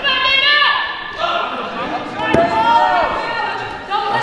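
Raised voices shouting in a large gym hall, with one short thump a little past two seconds in.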